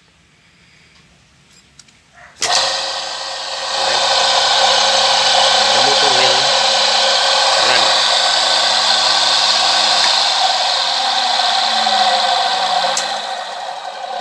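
A 1 hp single-phase capacitor-start induction motor switched on through its magnetic contactor: the motor starts suddenly about two seconds in, comes up to speed over about a second and then runs steadily with a loud whir from its cooling fan.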